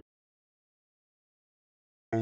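Near silence: a dead-quiet gap with nothing audible.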